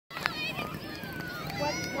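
Several children's voices shouting at once, high-pitched and overlapping, with no clear words.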